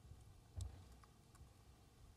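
Faint laptop keyboard keystrokes: a few scattered clicks, the loudest a short thump about half a second in, over a quiet room.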